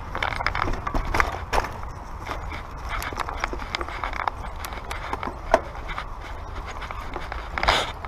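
Mountain bike riding over a dirt trail strewn with dry eucalyptus leaves and roots: tyres crunching on the leaf litter and the bike rattling with frequent clicks and knocks, over a steady low rumble. A sharp knock a little past the middle and a louder scraping burst near the end.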